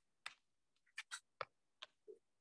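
About five faint, short clicks of a stylus tapping on a tablet's glass screen, spaced irregularly with two close together past the middle.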